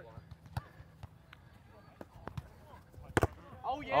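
A volleyball being struck in play on a grass court: one sharp smack a little after three seconds in, with a few lighter taps before it.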